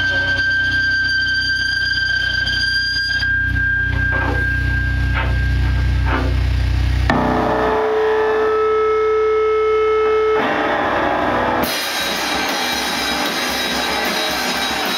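Live noise rock: heavily distorted electric guitar holding long sustained tones over a drum kit. The sound changes abruptly about seven seconds in, and again near the end, into a dense wash of noise.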